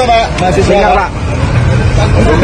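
Men talking in short exchanges over the chatter of a crowd, with a steady low rumble underneath.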